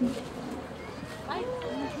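A quiet pause between spoken lines, filled with faint background voices and murmur. A few soft pitched sounds come about three-quarters of the way through.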